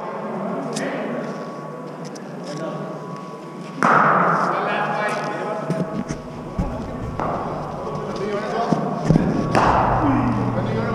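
Thuds of cricket balls being struck and landing in an indoor net hall. The loudest is a sharp thud about four seconds in that echoes on in the hall, with smaller knocks near seven and nine and a half seconds, over background voices.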